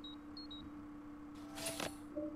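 A cartoon smartphone's electronic beeps: short high chirps in two slightly different pitches, in a pair right at the start and another about half a second in, over a steady low hum. A brief rushing noise follows near the end.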